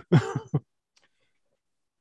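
A man's short chuckle through a headset microphone in the first half-second, in a few quick falling pulses, then dead silence.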